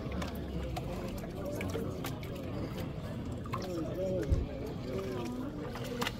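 Indistinct chatter from a crowd of people, with faint water sloshing and splashing as plastic gold pans are swirled and dipped in tubs of water. There are scattered small clicks and a brief low thump a little past the middle.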